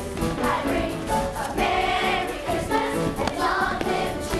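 A stage cast of children singing a song together in chorus, with musical accompaniment.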